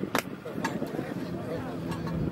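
Distant shouting and voices of players and spectators across a soccer field, with a single sharp knock just after the start.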